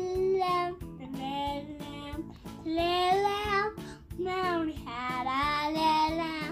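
Music: a child singing a melody in phrases of about a second each, some notes held and bent, over a plucked-string backing.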